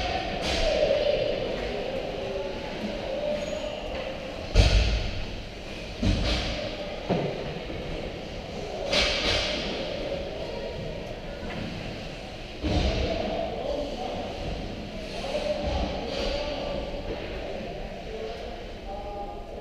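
Ice hockey rink during play: indistinct echoing voices carrying across the arena, with several sharp thuds, the loudest about four and a half seconds in and others at about six, seven and twelve and a half seconds.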